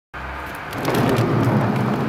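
Hot tub water rushing and bubbling in a steady wash of noise that starts suddenly and grows fuller about a second in.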